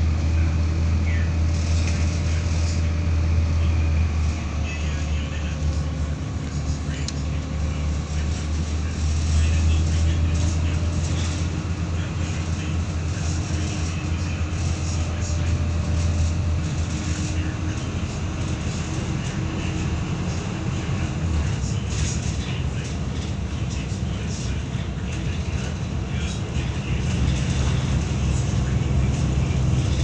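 Volvo B7RLE bus in motion, heard from inside the cabin: its rear-mounted six-cylinder diesel engine runs with a steady low drone over road noise, its pitch rising and falling gently as the bus speeds up and slows.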